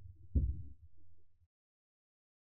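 Slowed-down sound of magnetic balls clattering onto a large block magnet, heard as a low rumble with one heavy muffled thud about a third of a second in, which dies away to silence before halfway.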